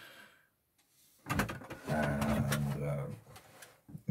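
A man's voice making a drawn-out wordless hesitation sound, like "ehh", starting about a second in and trailing off near the end, with a few short clicks at its start.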